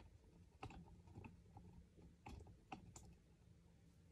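Near silence: quiet room tone with about half a dozen faint, scattered clicks.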